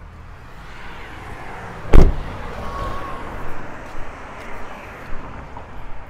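A single loud thump about two seconds in, over a steady low outdoor rumble.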